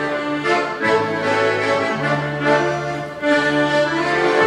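Accordions playing a traditional folk tune, with sustained chords over held bass notes that change about every second.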